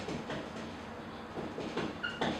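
Marker pen writing on a whiteboard: faint scratchy strokes, with a few small ticks in the second half.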